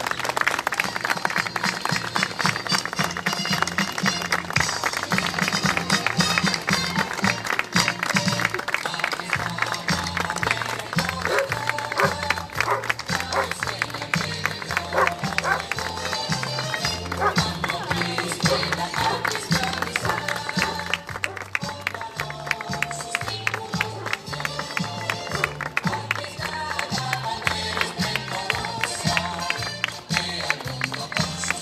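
Music with a stepping, march-like bass line plays while a crowd claps throughout, applauding the ceremonial flags as they are carried out.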